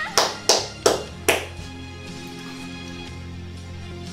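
Live band music: five sharp accent hits in quick, even succession, about three a second, each ringing briefly. A low chord is then held under them.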